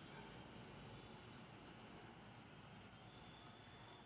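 Faint scratching of a pencil writing cursive on ruled notebook paper.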